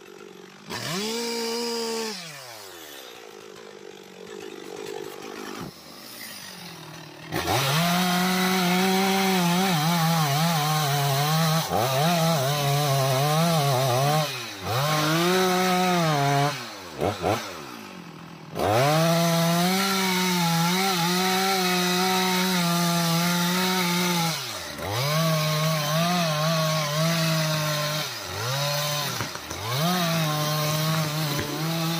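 Two-stroke chainsaw cutting anjili wood: a short rev about a second in and a few quieter seconds, then running at full throttle from about seven seconds, its pitch dipping now and then and dropping back briefly around seventeen seconds before it revs up again.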